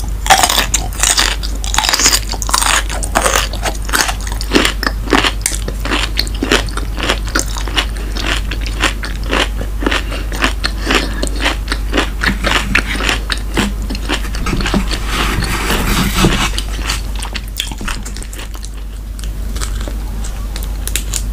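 Close-miked chewing of a bite of cheesy shrimp gratin: a dense run of sharp mouth clicks, loudest in the first couple of seconds and easing off near the end.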